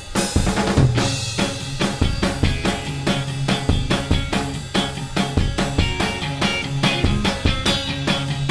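Blues-rock band playing live: a drum kit keeping a steady beat of bass drum and snare with electric guitar and bass guitar, opening with a cymbal crash. A low bass line comes in about a second in.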